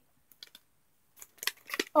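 Hands handling small craft items and their packaging: a couple of faint ticks, then a quick run of clicks and rustles in the second half.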